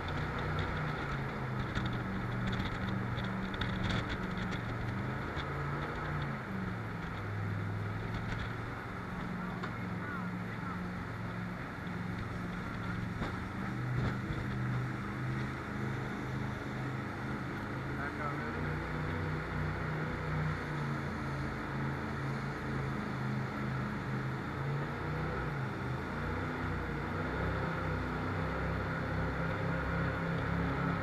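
Jet boat engine running hard under way, its note stepping up and down several times as the throttle changes, over the rush of water and wind.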